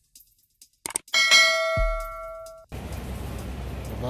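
Subscribe-button animation sound effect: a couple of quick clicks, then a bright bell ding that rings for about a second and a half and cuts off abruptly. Steady street noise follows near the end.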